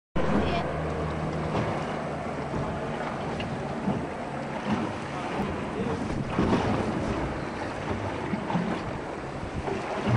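Wind buffeting the microphone over choppy sea water on a moving boat, with a low engine hum underneath that is clearest in the first second or so.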